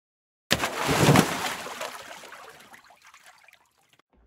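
A splash of water that starts suddenly half a second in, is loudest about a second in, then trickles and fades away over the next couple of seconds.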